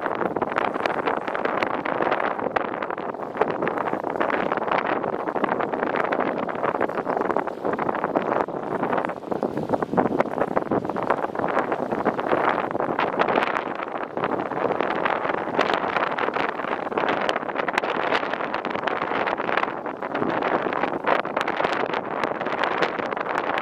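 Wind buffeting the microphone in uneven gusts, a rough rushing noise that swells and dips throughout.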